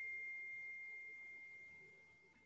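A single high chime: one pure tone, struck just before, ringing and fading steadily.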